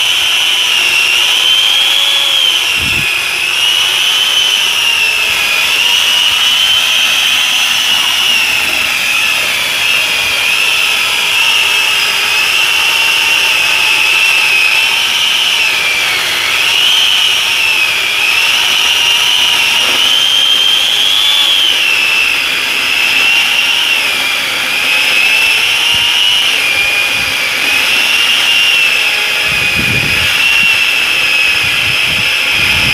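An electric 4-inch angle grinder driving a mini chainsaw attachment (11.5-inch bar and chain) cutting into a tree trunk. A loud, high motor whine runs throughout, its pitch dipping and recovering again and again as the chain bites into the wood.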